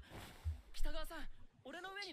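Quiet dialogue from an animated episode: a high, strained voice in two short, drawn-out phrases.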